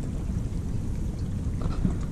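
Steady low rumble of outdoor background noise, deep in pitch, with no distinct events apart from a couple of faint soft sounds near the end.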